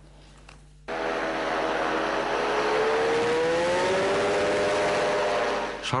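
Engine of a motorised hang glider (deltaplane trike) running loudly. It starts suddenly about a second in, and its pitch rises slowly through the middle as it powers up on the field for takeoff.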